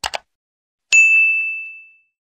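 Subscribe-button sound effect: two quick mouse clicks, then a bright notification-bell ding about a second in that rings out and fades over about a second.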